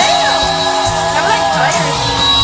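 Live pop ballad performance: a singer's voice sliding up and down in pitch in quick runs over sustained band and keyboard chords.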